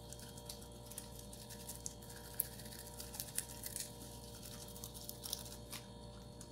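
Faint, irregular crunching clicks of fresh guava leaves being chewed, over a low steady hum.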